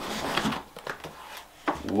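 A cardboard box being opened by hand: the flaps scraping and rustling, loudest in the first half second, then fainter with a few light knocks.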